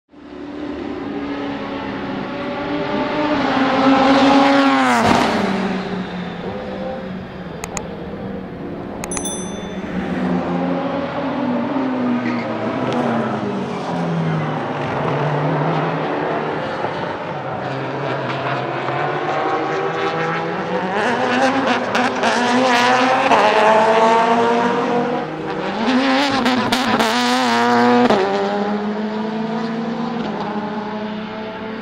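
A Mercedes-Benz CLK AMG DTM (C209) race car's naturally aspirated 4.0-litre V8 running on track, revving up and down through the gears. The pitch falls sharply about five seconds in and again near the end.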